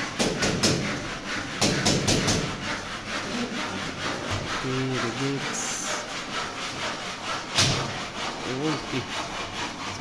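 A hand tool scraping and rasping against a PVC ceiling panel and its metal furring channel, in rapid strokes for the first few seconds, with a sharp click later on.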